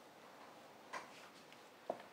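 Two faint, short clicks about a second apart in a quiet room: a laptop being clicked to advance a presentation slide.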